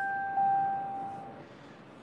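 Clarinet holding a long high note that swells slightly about a third of a second in, then fades away about a second and a half in, leaving a brief pause.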